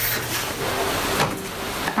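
A steady rustling, rubbing noise.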